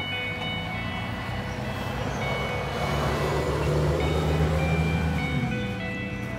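A steady low rumble of a passing vehicle under soft background music; the rumble rises slightly in pitch near the end.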